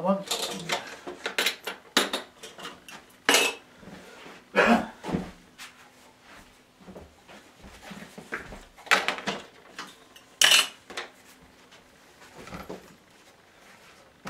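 Metal binder clips being unclipped from a wooden drawing board and set down: an irregular series of sharp metallic clicks and clatters, the loudest a few seconds apart.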